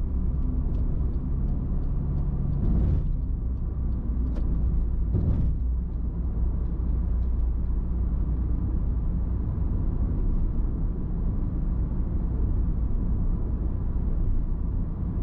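Car road noise heard from inside the cabin while driving at steady speed: a continuous low rumble of engine and tyres. Two brief louder swells of noise come about three and five seconds in.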